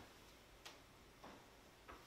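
Near silence with three faint, short clicks about half a second apart: objects being handled inside an open aluminium briefcase.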